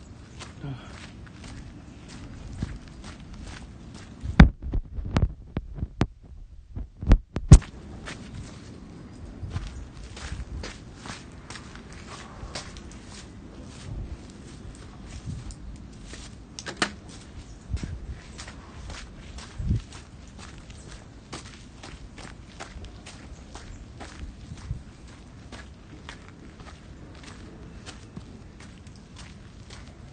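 Footsteps and handling noise from a handheld phone microphone while walking: low thuds and rubbing with frequent small clicks, and a cluster of loud knocks about four to eight seconds in.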